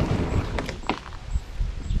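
A few sharp knocks and rustling from gear being handled in a plastic fishing kayak, over a steady low rumble.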